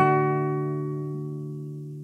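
Nylon-string classical guitar: one chord struck right at the start and left to ring, fading slowly away.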